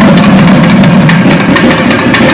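Thavil, the South Indian barrel drum, played hard in a fast, dense flurry of strokes that crowds out the nagaswaram melody.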